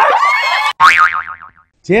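Excited shouting, then a comic cartoon 'boing' sound effect: a springy twang whose pitch wobbles rapidly up and down and fades out after about half a second.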